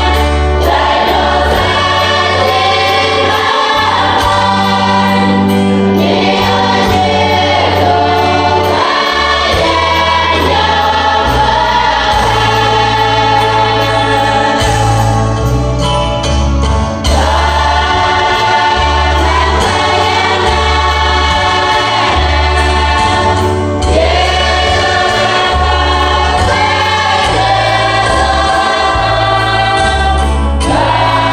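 A large women's choir singing a hymn together, with low held bass notes underneath that change every second or so.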